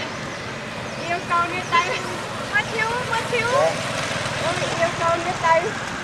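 Baby macaque giving repeated short, high squeaks and chirps, some of them rising in pitch, over steady background noise.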